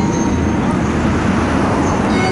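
Steady outdoor city background noise, a broad low rumble and hiss like distant traffic and crowd, with music faint beneath it.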